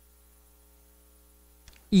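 Faint steady electrical mains hum, a few low steady tones and nothing else; a man's voice starts right at the end.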